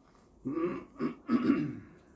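A person clearing their throat, in three short rough bursts, with a little laughter mixed in.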